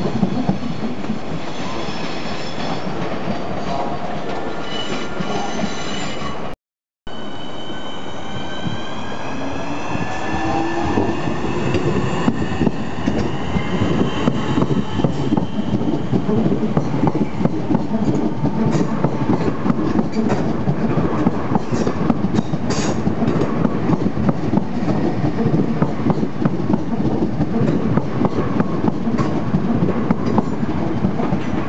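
Southeastern electric multiple-unit train accelerating past the platform: its traction motors whine in several pitches that rise together as it gathers speed, then its wheels click steadily over the rail joints as the carriages go by. Before that, a steady high electric whine from a Class 375 Electrostar, broken off by a brief dropout about six seconds in.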